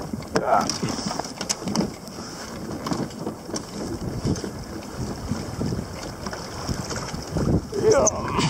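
Wind buffeting the microphone and water slapping against the hull of a plastic Hobie Pro Angler fishing kayak in open sea. Brief vocal sounds from the angler come near the start and near the end.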